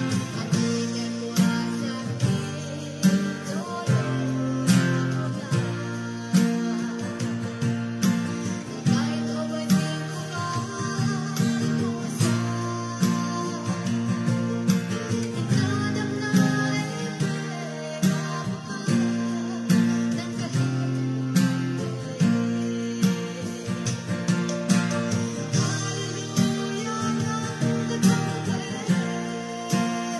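Acoustic guitar with a capo at the first fret, strummed steadily through a chord progression of A, F#m, E, D and G shapes, the chords changing every second or two.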